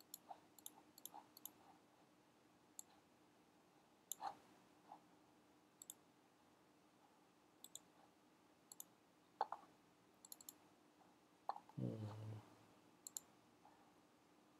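Scattered soft clicks from a computer mouse and keyboard, a few at a time with pauses between, over a faint steady hum. A brief low sound comes near the end.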